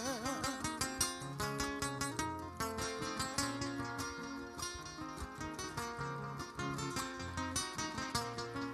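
Acoustic guitars playing the instrumental interlude of a Panamanian décima (cantadera) accompaniment, with fast plucked notes over a low bass line. The end of a sung line fades out in the first half second.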